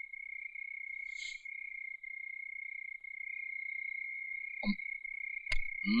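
A steady high-pitched insect trill, held on one unbroken pitch, as in a night-time background of crickets. A short sharp click sounds near the end.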